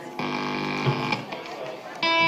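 An amplified guitar note held for about a second, then fading, amid audience chatter.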